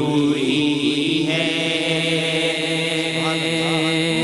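Male voices singing a naat, holding long, steady notes.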